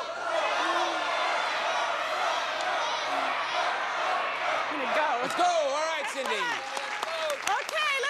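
Studio audience shouting and clapping, many voices at once. After about five seconds this thins out to a single voice talking.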